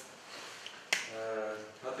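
A single sharp click about a second in, followed by a man's voice holding a short, level hesitation sound, an "eee".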